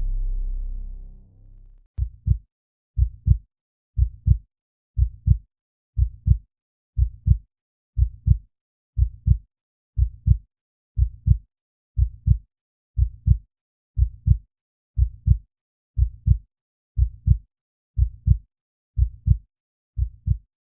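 A low drone fades out in the first two seconds, then a heartbeat sound effect starts: steady pairs of low thumps, about one pair a second.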